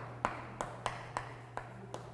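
Chalk writing on a chalkboard: a quick series of sharp taps, about three a second, as the strokes of the letters strike the board.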